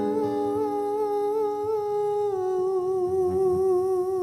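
A male singer holds one long note with a slight vibrato, slipping a little lower in pitch about halfway through. An acoustic guitar chord rings under it for the first couple of seconds, then fades away.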